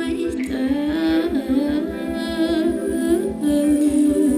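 A female singer's voice singing a held, gliding melody into a handheld microphone in a live stage performance, over a backing track with an even, pulsing low beat.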